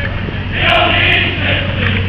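A group of male voices chanting together in unison. A loud call starts about half a second in and lasts about a second.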